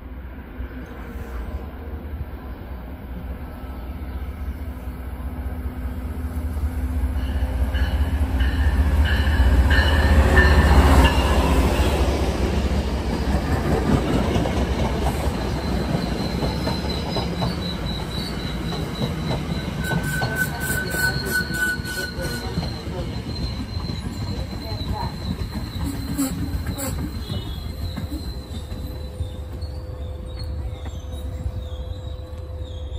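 MBTA commuter train led by an HSP-46 diesel-electric locomotive arriving at about 16 mph. Its rumble grows to its loudest about ten seconds in as the locomotive passes, then the coaches roll by with high, steady squeals from the wheels and brakes as the train slows.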